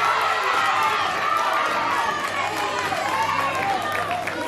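A crowd of women's voices calling out and chattering over one another, several high-pitched shouts overlapping at once.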